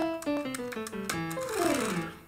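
Sampled grand piano in Kontakt 3, played from MIDI, running quickly down a descending sequence of notes.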